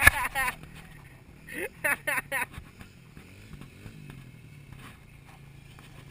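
Two short bursts of voices, shouts or laughter, one at the start and one about two seconds in, over a steady low engine hum.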